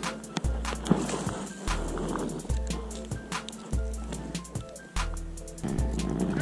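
Background music with a steady beat: deep bass notes about once a second under quick, sharp percussion ticks.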